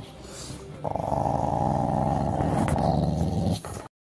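Chow chow growling in one long, steady, rough growl that starts about a second in and lasts about three seconds, worked up over a bite of food held out to it.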